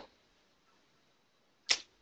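Two short, sharp clicks over faint room tone: one right at the start and a louder one near the end.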